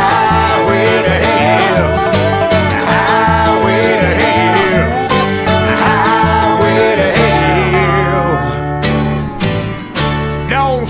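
Bluegrass band playing an instrumental passage led by banjo and guitar. From about seven seconds in the bass holds long low notes, and the music dips briefly near the end.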